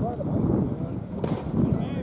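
A single sharp crack of a wooden baseball bat hitting a pitched ball about a second in, over background voices. It is a solid-sounding contact.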